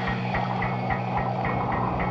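Even mechanical ticking, about three to four clicks a second, over a low steady hum.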